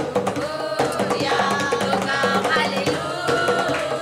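Group of women singing a Hindi Christian worship song over a steady drum and percussion accompaniment.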